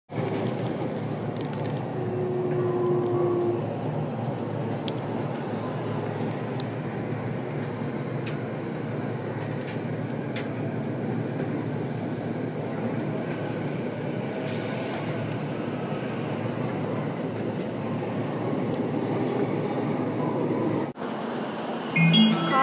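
Steady rumble of a commuter train running on its rails, heard from inside the carriage.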